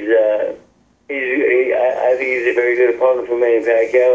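A man speaking over a conference-call telephone line, sounding thin with no highs, with a short pause about a second in.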